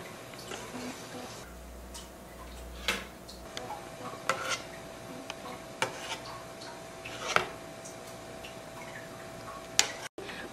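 Metal spoon knocking and scraping against an aluminium stockpot and a bowl while foam is skimmed off simmering soup: a handful of light clicks a second or more apart, over a faint steady hum.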